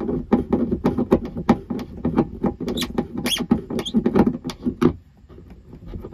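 Screws of a kayak paddle holder being tightened down through the kayak's plastic deck, heard from inside the hull: a quick, irregular run of clicks and creaks that stops about five seconds in.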